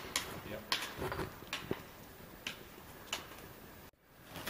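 Trekking pole tips striking rock and gravel as a hiker walks, with footsteps on stony ground: a scattered, irregular series of sharp clicks, about eight in four seconds, over a faint background.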